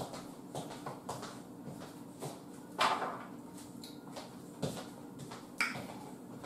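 Scattered light knocks and clunks of a small hookah being fetched and handled, with a few louder knocks midway and near the end, over a faint steady hum.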